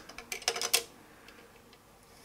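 Plastic clamp bricks clicking against each other as a brick-built car chassis module is handled, a quick run of small clicks in the first second.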